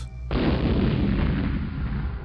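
Gas explosion of an oxygen and propane mixture blowing apart a cash machine: a sudden loud blast about a third of a second in, followed by a rumble that carries on at high level.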